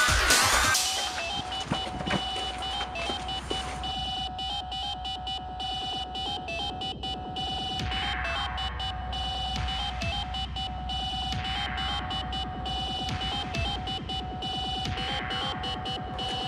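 Electronic background music: a louder passage drops away about a second in, leaving held tones with a falling sweep that repeats every few seconds.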